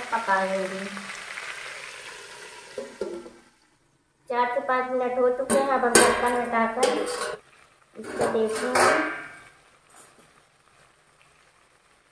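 Chicken feet and tomatoes sizzling in hot mustard oil in an aluminium kadhai. About four seconds in come loud clanks and scraping, with pitched squeals, as the pan is covered. The noise fades near the end.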